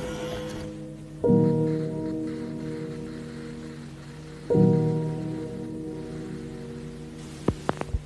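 Background music: sustained chords struck twice, about a second in and again about four and a half seconds in, each ringing and fading slowly over a soft rain-like hiss. A brief whoosh comes near the end.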